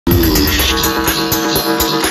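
Dance music from a DJ set played loud over a club sound system, with a steady beat of hi-hat ticks about four a second. The deep bass drops away about halfway through.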